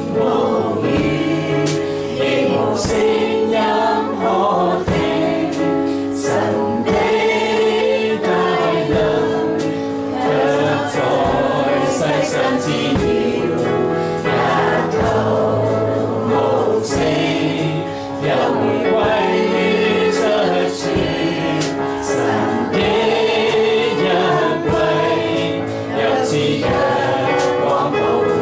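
A Christian worship song sung by a group of voices with electronic keyboard accompaniment, steady and unbroken.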